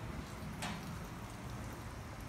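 Faint, steady patter and hiss of water dripping onto wet concrete in a self-serve car wash bay, with one light tap about two-thirds of a second in.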